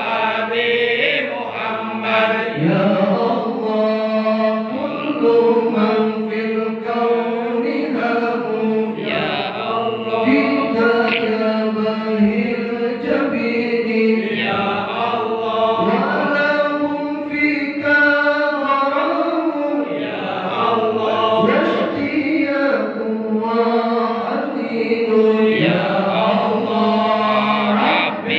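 Men chanting marhaban devotional verses in praise of the Prophet, sung as a continuous melodic chant. A lead voice on a microphone is joined by the group.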